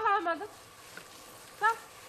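Speech only: a short spoken phrase, a pause with faint outdoor background, then a brief "sağ ol" near the end.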